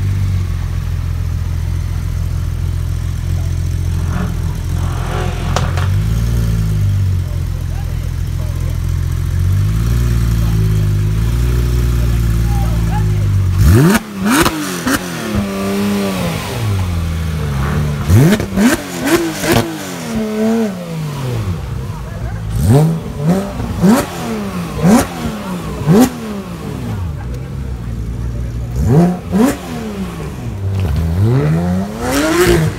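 Porsche 911 GT3 RS's naturally aspirated flat-six idling with a steady low rumble, then, about 14 seconds in, revved in a string of sharp blips, each climbing fast and dropping back, repeated about every one to two seconds.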